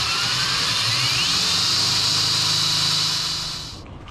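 Corded electric drill running while boring a hood-pin hole through the car's front sheet-metal panel, working slowly with a dull bit. Its whine rises in pitch over the first two seconds, then holds steady, and it stops shortly before the end.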